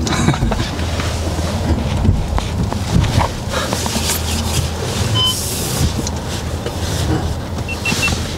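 Inside the cabin of a Volkswagen Touareg with the 3.0 V6 TDI diesel, driving slowly over rough, muddy ground: a steady low engine drone with scattered knocks and rattles from the body and suspension.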